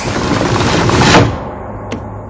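Loud, noisy action sound effects from a horror film's soundtrack: a dense crash-like rush that holds for about a second, then dies away.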